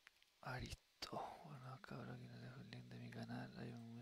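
A faint voice, starting about half a second in.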